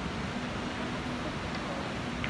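Steady background noise of a billiards tournament hall: a low even hum and hiss, with one faint click about one and a half seconds in.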